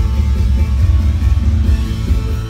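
Live krautrock music played loud through a PA, with a heavy, pulsing bass under layered sustained tones.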